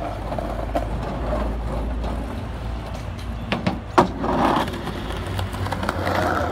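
Skateboard wheels rolling with a steady low rumble, broken by a few sharp clacks of the board around three and a half to four seconds in, the loudest at about four seconds.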